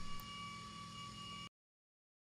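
Faint workshop room tone with a steady high-pitched hum. It cuts off suddenly to complete silence about one and a half seconds in.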